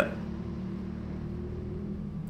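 Indoor go-kart running, heard from the onboard camera as a steady low hum.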